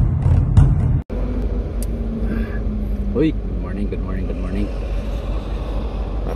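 Intro music with drum hits cuts off about a second in, followed by a steady low rumble of a car's idling engine heard from inside the cabin.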